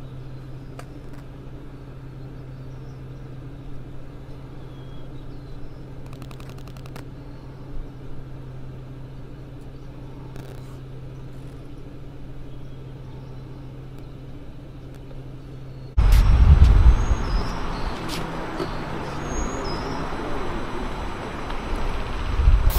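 A steady low hum for most of the clip, with a quick run of fine clicks about six seconds in. About 16 seconds in it cuts abruptly to loud road-traffic noise with a low rumble and wind on the microphone beside a busy multi-lane road.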